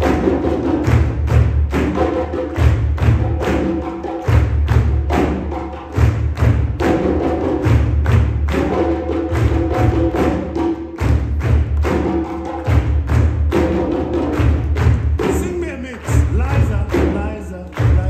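West African drum ensemble: hand-played djembes and a set of three stacked dundun bass drums struck with a stick, playing a fast, steady rhythm with deep bass thumps. Near the end a voice comes in over the drumming.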